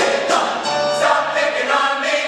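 Mixed chorus singing in harmony with a small jazz band of upright bass, drums and keyboard, the voices settling into a long held chord about a second in.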